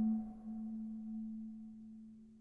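Ambient generative background music: one soft, bell-like note held and slowly dying away.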